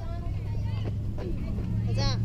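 Indistinct voices of players and spectators at a youth baseball game, over a steady low hum.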